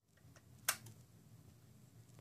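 Key turning in a 2005 Kawasaki ZX-10R's ignition switch: one sharp click less than a second in, with a few faint ticks around it over a low hum.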